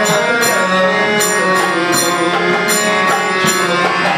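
Devotional ensemble music: a harmonium holding sustained reed chords under the beat of a khol, the double-headed Bengali barrel drum, with metallic jingling percussion keeping an even rhythm.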